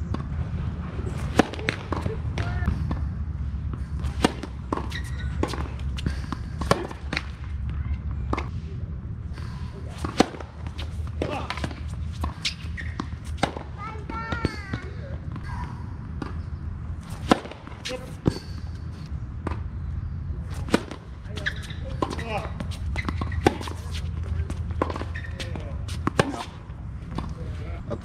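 Tennis rackets striking the ball and the ball bouncing on a hard court: a series of sharp knocks at irregular intervals through two points of play.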